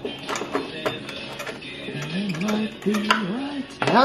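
Scattered clicks and knocks from handling a Jeep Cherokee's plastic taillight housing and its connectors. About halfway through, a low wavering hum of tones joins in.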